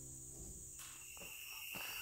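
Faint evening insect chorus of crickets: a steady high trill that comes in about a second in, as the last of a strummed acoustic guitar tune dies away.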